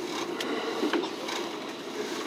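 Running noise heard inside a moving electric local train: a steady low rumble of wheels on rail, with a few sharp clicks and rattles about half a second and about a second in.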